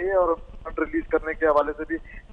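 Only speech: a man reporting in Urdu, his voice narrow and thin as heard over a telephone line.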